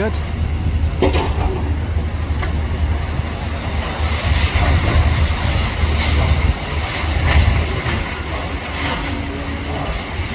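Demolition excavator's diesel engine running, a steady low rumble, with scattered knocks and crunches of concrete and rebar being pulled apart.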